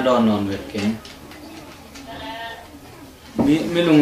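Spoken dialogue that breaks off after about a second. In the quieter pause a faint, wavering, high-pitched call sounds briefly, and speech resumes near the end.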